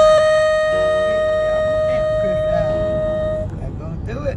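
A car horn sounding one long, steady blast at a single pitch, cutting off about three and a half seconds in, with voices underneath.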